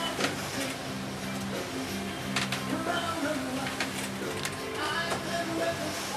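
Low, steady drone of a boat's engine, with sharp knocks of waves and spray hitting the hull a few times, and passengers' voices faint in the background.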